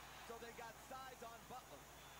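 Faint speech in the background, like basketball broadcast commentary playing quietly under the stream.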